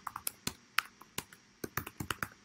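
Computer keyboard being typed on: a quick, irregular run of key clicks as a terminal command is entered.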